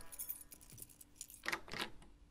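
Faint light metallic jingling and clinking: a few small clinks at the start, then two short jingles in the second half.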